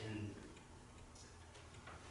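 A man's voice trailing off at the end of a word, then a quiet pause of room tone with a couple of faint ticks.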